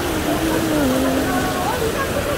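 Heavy rain pouring onto the road and shelter, a steady hiss, with a city bus pulling in close by.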